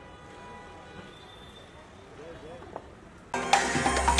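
Faint murmur of crowd voices, then loud music with a heavy bass starts suddenly about three seconds in.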